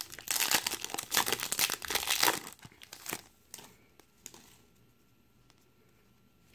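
Foil wrapper of a Topps baseball card pack being torn open and crinkled by hand for about two and a half seconds, followed by a few faint taps.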